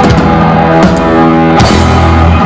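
Punk rock band playing live: electric guitar, bass guitar and drum kit, with drum hits about a second in and again a little later, and a long low note coming in near the end.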